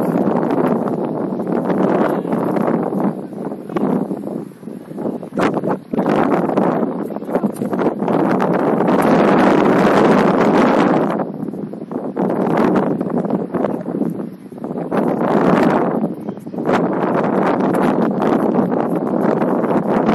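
Wind buffeting the microphone in gusts: a rough, rushing noise that swells and drops over several seconds, loudest about halfway through.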